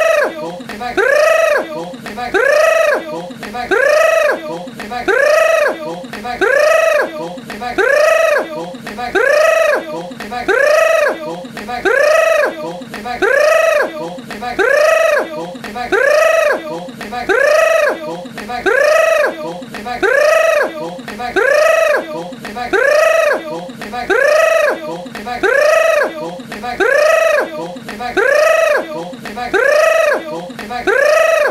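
A short, high-pitched cry that rises and then falls in pitch, repeated identically about every one and a half seconds as a mechanical loop.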